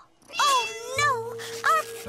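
Cartoon kitten meowing about three times in short calls that rise then fall in pitch, while background music comes in about halfway through.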